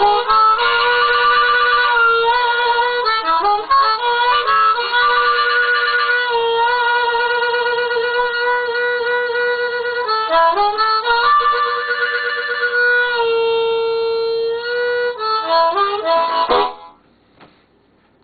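Harmonica played with both hands cupped around it: a solo phrase of held notes, some wavering, and quick stepwise runs, stopping abruptly about a second before the end.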